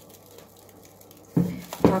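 Faint crinkling and rustling of plastic cling film being tugged in a ceramic dish, followed near the end by a woman's short spoken word.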